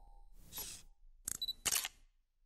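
Logo-reveal sound effects: a brief whoosh about half a second in, then two camera-shutter clicks about half a second apart near the end.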